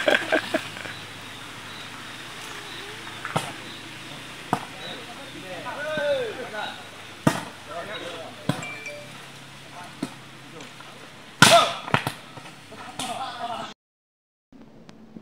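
Volleyball rally: a leather volleyball is struck by players' hands and arms, making several sharp slaps spaced a second or more apart, the loudest near the end. Players shout and call out between the hits.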